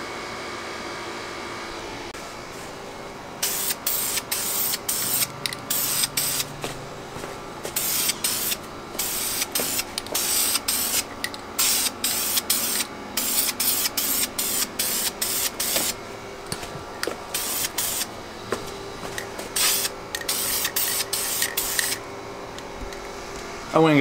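Aerosol can of Dupli-Color wheel paint spraying in many short bursts, one after another, as a base coat goes onto a masked wheel. The spraying starts a few seconds in and stops near the end.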